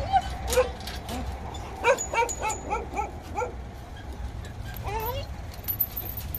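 Dog whining and yipping in an excited greeting: a string of short pitched calls that bend up and down, several in quick succession about two seconds in, then a longer rising call about five seconds in.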